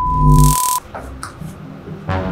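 Logo-intro sound effect: a steady high test-tone beep of the kind that goes with TV colour bars, under a loud noisy glitch burst with a deep low end. Both cut off suddenly under a second in, followed by a few short glitchy clicks.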